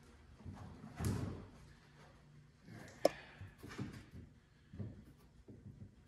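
A hard plastic tool case being set down on a foam-board sign panel as a weight: a dull thump about a second in, a sharp click about three seconds in, then a few lighter knocks as it is shifted into place.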